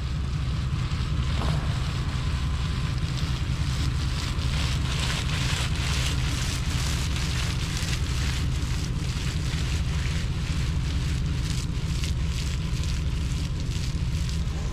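Spray from a slow-moving frost-protection irrigation sprinkler falling onto strawberry plants: a steady hiss of water with many irregular droplet ticks, heaviest in the middle. A steady low engine hum runs underneath.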